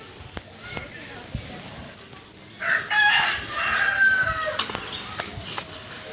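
A rooster crowing once, a drawn-out call of about two seconds starting a little before halfway, loud against footsteps crunching on a dirt path.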